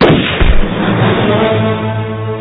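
A loud, sudden gunshot right at the start, its low rumble dying away into dramatic soundtrack music with low held notes.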